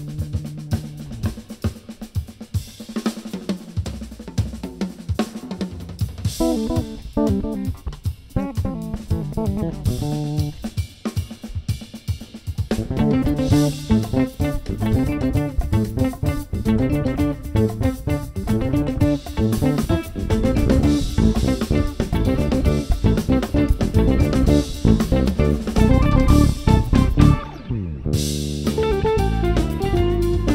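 Cort GB-Fusion electric bass played fingerstyle in a jazz-fusion line over a drum-kit groove. The music is sparser at first and grows fuller and louder about halfway through, with a brief break near the end.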